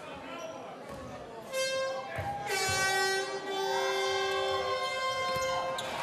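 Arena crowd din, then long held horn blasts from about a second and a half in: several steady pitches sounding together and shifting, lasting to near the end.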